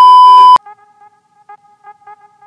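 A loud electronic beep, one steady high tone held for about half a second at the start and then cut off sharply. Faint electronic music with a pulsing beat follows.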